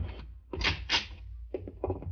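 Radio-drama sound effects of entering a storeroom: two short scrapes in quick succession, then a few light clicks, over the steady low hum of the old recording.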